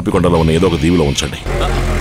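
A man talking and laughing for about a second and a half, then, at a cut, a low steady rumble with sustained held tones.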